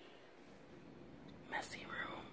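Faint room tone, then a short whisper about one and a half seconds in.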